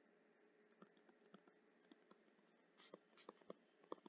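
Very faint, sparse taps and clicks of a stylus writing by hand on a tablet, growing more frequent in the second half.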